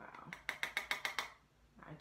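A makeup brush loaded with powdery blush tapped against a garbage can to knock off the excess powder: a quick run of about eight sharp taps in just over a second.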